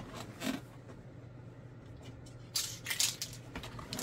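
Handling sounds of small metal Tamiya spray cans being picked out of a rack: a light knock about half a second in, then a short spell of clatter and rattling from about two and a half seconds in.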